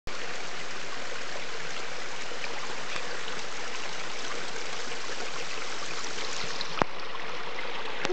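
Small mountain waterfall running steadily over rocks, a continuous splashing rush of clear running water. A single sharp click sounds a little before the end.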